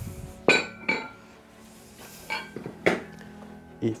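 Metal plate-loaded dumbbells clinking several times, each knock with a short metallic ring, over steady background music.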